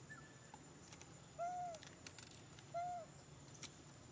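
Two short, arched, hoot-like animal calls, each rising and falling in pitch, about a second and a half apart, over quiet forest background with a few faint ticks.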